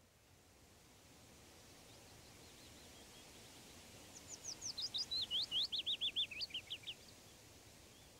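A songbird sings one fast run of about twenty short whistled notes, the run stepping down in pitch over about three seconds, over faint steady outdoor background noise.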